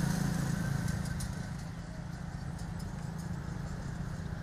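Small motorbikes riding past on a road. Their engine sound fades over the first couple of seconds and leaves a steady low traffic hum.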